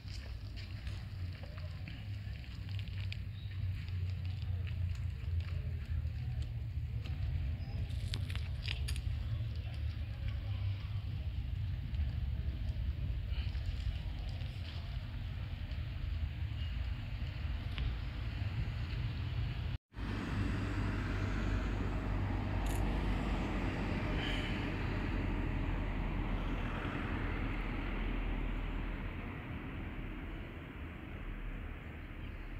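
Outdoor wind buffeting a handheld microphone: a fluctuating low rumble, with a short dropout about two-thirds of the way through and a broader hiss after it.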